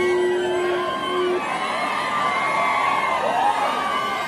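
Large street crowd cheering and shouting, many voices whooping and calling out over each other. A single steady held note sounds over the crowd for about the first second and a half.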